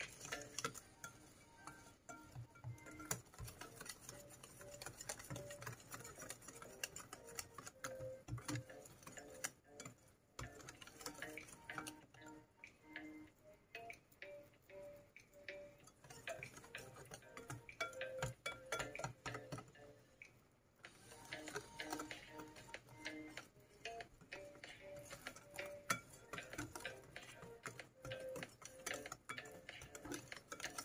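A wire whisk beating batter in a ceramic bowl: a fast, uneven run of light clicks as the wires tap the bowl. Faint soft background music plays under it.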